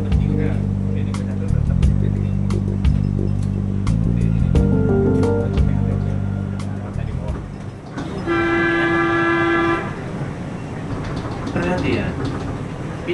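Music for the first seven seconds, then one steady horn tone lasting about a second and a half, heard from the cab of the airport Skytrain people mover while it runs along its guideway, with scattered clicks from the ride.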